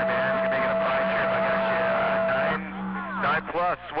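CB radio receiver playing an unintelligible, garbled transmission: jumbled voices under a steady whistle and hum. The signal cuts off about two and a half seconds in, and a clear voice starts near the end.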